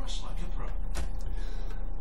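A couple of sharp clicks from computer keyboard keys, one near the start and one about a second in, over a steady low background hum.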